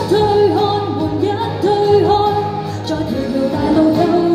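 A woman singing a Cantopop song live into a handheld microphone over pop backing music, holding long notes with slides in pitch.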